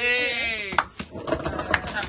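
Young women laughing: one long, high-pitched, bleat-like laugh that slides down in pitch, then several voices laughing together in short, broken fits.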